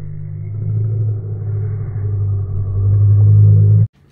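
A loud, steady low rumble that swells slightly and cuts off abruptly just before the end.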